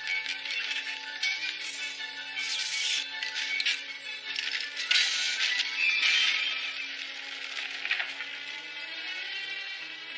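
Film score music with long held notes, overlaid by several short bursts of clatter and crackle from the sound effects, the loudest about five to six seconds in.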